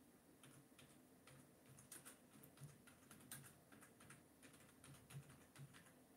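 Faint, irregular clicking of typing on a computer keyboard.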